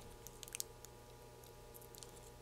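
Near-silent room tone with a faint steady hum and a few faint small clicks, about half a second in and again near the end.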